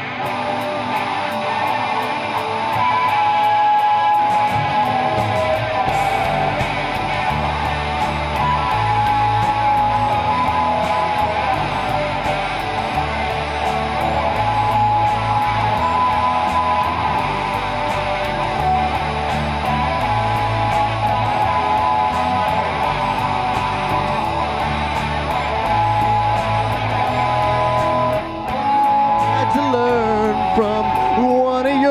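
Live rock band playing an instrumental song intro: electric guitars over a repeating bass line, the bass coming in a few seconds in.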